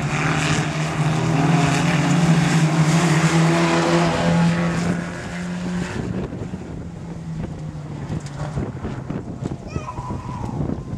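Modified stock car engines racing past on the dirt track, one steady high-revving engine note holding for the first five or six seconds, then fading into rougher engine noise and wind buffeting the microphone.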